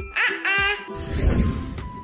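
Light children's background music, with a short baby giggle sound effect over it about a quarter of a second in.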